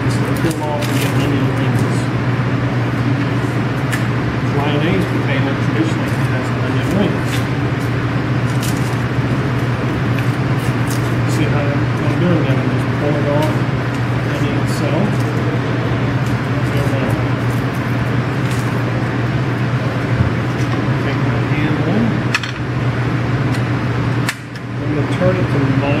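Small crackles and clicks of a yellow onion's dry skin being peeled off by hand with a paring knife, over a constant low hum and low voices.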